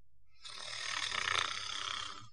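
A person snoring: one long snore with a low rattle, building from about half a second in to its loudest past the middle and fading near the end.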